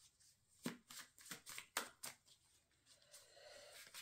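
A tarot card deck being shuffled by hand, faint: a handful of short card slaps in the first half, then a soft rustle of cards near the end.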